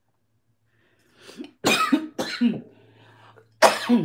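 A person coughing: three hard coughs, the first about a second and a half in and the last and loudest near the end, from a frog in the throat.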